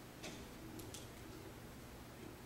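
Quiet room tone with three faint, short clicks, about a quarter second, three quarters of a second and one second in.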